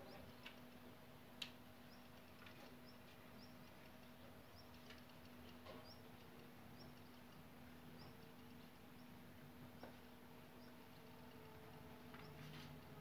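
Quiet outdoor ambience with faint, sparse, high bird chirps every second or so, and two small clicks about half a second and a second and a half in.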